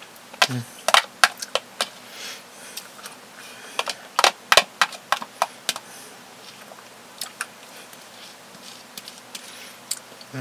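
A metal spoon clicking and scraping against a plastic tub of thick sour cream, with eating sounds: a run of short sharp clicks, in two busy clusters about a second in and around four to five seconds, then a few scattered clicks.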